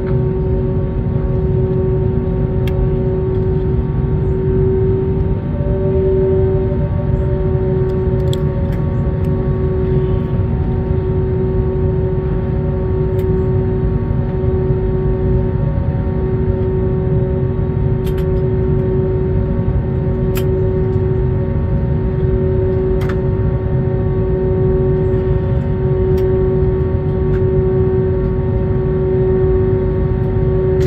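Cabin noise of an Airbus A321neo taxiing slowly to the gate with its engines at idle: a steady, loud rumble with a steady hum over it. A few faint clicks are scattered through it.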